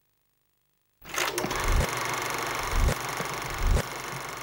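Silence, then about a second in a steady mechanical clattering starts, with a few low thumps.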